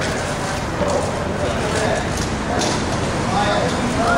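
Indistinct voices talking, over a steady low rumble.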